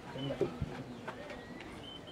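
Birds chirping in thin, high repeated notes, with a brief low voice-like call and a sharp knock about half a second in.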